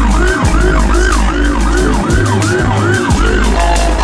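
Siren yelping in quick rising-and-falling sweeps, about three a second, stopping a little before the end, over loud music with heavy bass and a steady beat.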